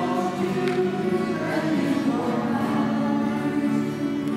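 A choir singing the offertory hymn, holding long notes and moving slowly from note to note.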